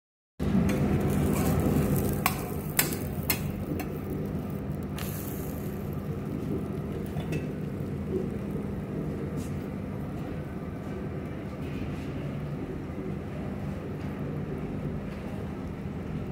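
A metal spatula clicks and scrapes against an iron frying pan several times in the first five seconds while a bread omelette cooks. Under it runs a steady low hum.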